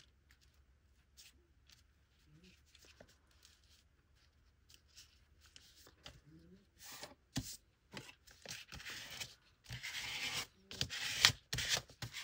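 A card scraping glue across a sheet of paper in short rubbing strokes. It is very quiet at first, and the strokes become quicker and louder over the last few seconds.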